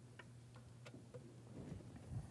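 Near silence: room tone with a low steady hum and a few faint clicks from the laptop keys.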